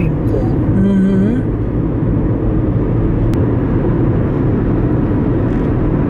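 Steady hum of tyres and engine heard from inside a moving car's cabin.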